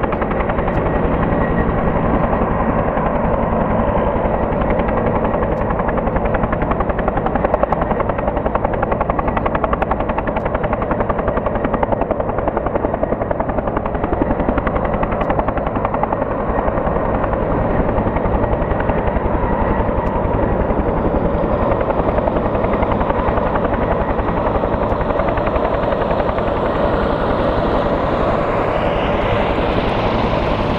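Bell 212 helicopter hovering overhead on a long line, its two-bladed main rotor beating steadily over the turbine noise.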